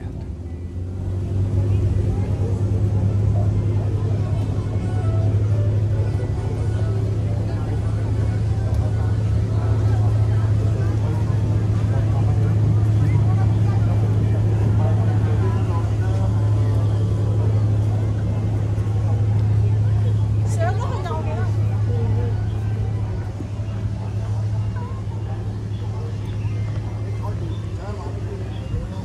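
Jungle Cruise tour boat's motor running steadily as the boat passes, a low hum that eases off a little after about twenty seconds.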